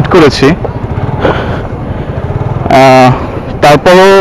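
Suzuki Gixxer's single-cylinder engine running at low revs as the bike is ridden slowly, with a man's voice over it near the start and again in the last second or so.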